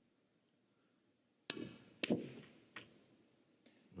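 Snooker shot: the cue tip clicks sharply against the cue ball, and about half a second later the cue ball clicks into a red, which goes on to be potted.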